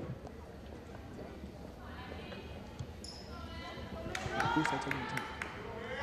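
Gym crowd chatter: spectators' voices, louder in the second half. A few sharp knocks of a basketball bouncing on the hardwood floor come over it.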